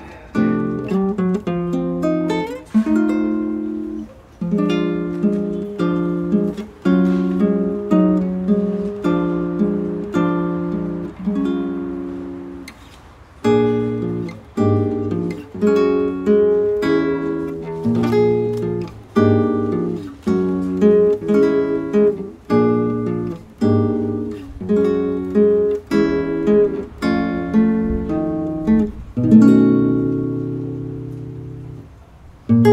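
Solo nylon-string classical guitar played fingerstyle: plucked notes and chords in a steady, unhurried rhythm, each ringing and fading. About twelve seconds in a chord is left to ring out before the playing picks up again.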